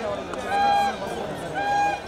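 A voice calling out in short, high, held shouts, about one a second, each at a single pitch, over the steady noise of an outdoor crowd.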